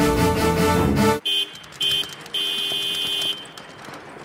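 Background music that cuts off about a second in, followed by a car horn: two short honks and then a longer one.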